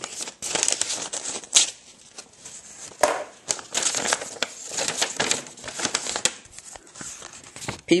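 A taped-up paper envelope being cut and torn open with a knife, the paper crinkling and rustling in irregular bursts as it is handled.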